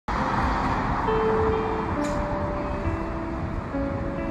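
Steady street traffic noise, with a slow melody of held notes from background music over it.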